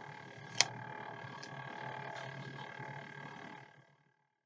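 Hands handling paper and a small metal compass embellishment on a journal page, with one sharp click about half a second in and two fainter ticks after it, over a faint steady hum.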